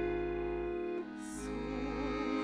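Accordion playing a slow instrumental interlude of held, sustained chords, the notes changing about a second in.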